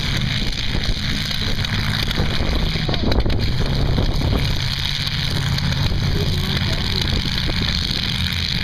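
Engines of several demolition derby cars running loudly as they manoeuvre, with wind on the microphone.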